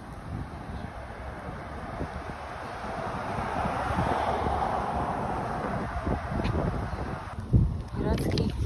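Wind buffeting the microphone, a fluttering low rumble with a rushing noise that swells in the middle and cuts off suddenly near the end.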